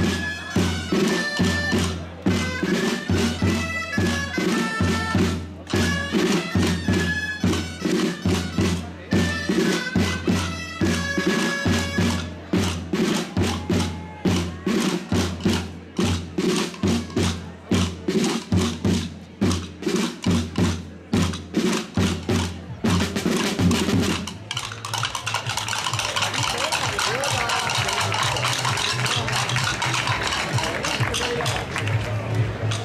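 Traditional street-band music: a loud, reedy shawm-like pipe plays a dance tune over a steady drum beat. The music stops about three-quarters of the way through, leaving crowd chatter.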